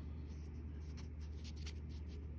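Quiet room with a steady low hum and a few faint, light scratching or rustling sounds, like paper or a marker being handled.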